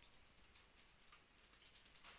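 Near silence: faint hiss with a scattering of faint, irregular ticks from a computer mouse as its wheel scrolls and its buttons click.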